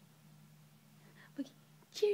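Mostly quiet, with a faint steady hum; a baby gives a brief vocal sound that falls in pitch about one and a half seconds in, and a louder one begins right at the end.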